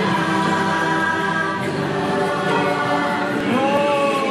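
Choral singing in long held notes, the chant of the Shaman of Songs animatronic on the Na'vi River Journey ride, with a voice sliding up and then back down near the end.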